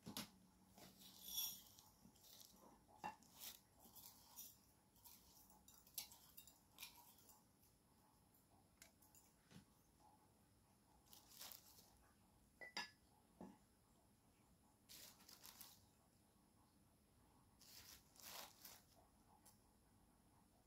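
Faint, scattered crunching and scraping of a wooden pestle grinding dry rice grains in a wooden mortar, with near silence between the strokes.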